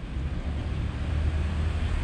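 Outdoor background noise: a steady low rumble with a faint hiss and no distinct events.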